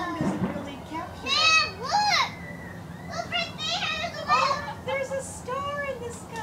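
Adults and children exclaiming and whooping excitedly at the total solar eclipse, with high, sliding cries that rise and fall, one steep rising-and-falling cry about two seconds in.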